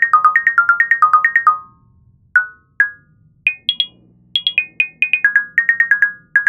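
Electronic music: a synthesizer melody of short, bright, plucked notes in quick succession, without drums. It thins to a few isolated notes about two seconds in, then the quick run of notes picks up again.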